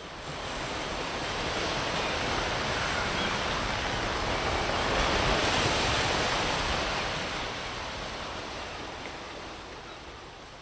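Ocean surf sound effect: a wash of waves that swells over the first couple of seconds and slowly fades away.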